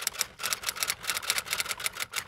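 Typewriter keystroke sound effect: a rapid run of key clacks, about seven a second, as text types out on screen.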